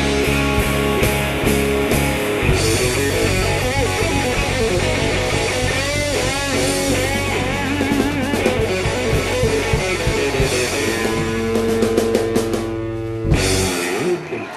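Live rock band (electric guitar, electric bass and drum kit) playing a song's closing section, the lead guitar playing wavering, bent notes. A fast run of drum and cymbal hits builds to one loud final hit about a second before the end, where the music drops away.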